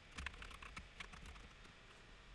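Faint, quick run of about a dozen computer keyboard keystrokes, a password being typed, all within the first second and a half.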